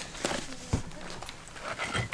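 A few scattered knocks and scuffs of someone moving over loose wooden boards and debris, with camera handling.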